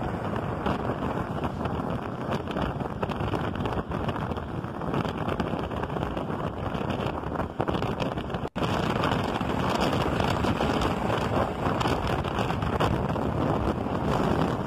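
Steady road and traffic noise from riding in a moving car, with wind rushing over the microphone. The sound drops out abruptly for an instant about eight and a half seconds in.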